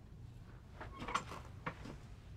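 A few light knocks and clicks of things being handled, a cluster about a second in and another near the end, over a low steady room hum.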